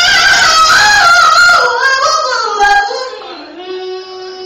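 A woman singing a loud gospel run, her voice sliding up and down through several held notes. Near the end it gives way to a softer, steady held note.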